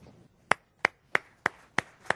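One person clapping, close to the microphone: five sharp, separate claps at an even pace of about three a second, beginning about half a second in.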